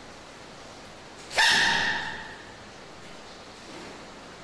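A baby giant panda's sneeze: one sudden, high-pitched squeak about a second and a half in, fading within about half a second, over a faint steady hiss.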